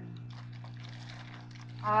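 Steady low electrical hum, with a few faint, soft, short rustling noises in the first second and a half.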